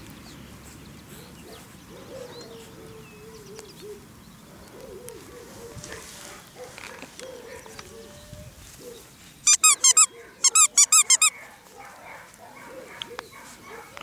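Squeaker in a plush dog toy being chewed by a puppy: two quick bursts of loud, high-pitched squeaks about ten seconds in, several squeaks in each burst.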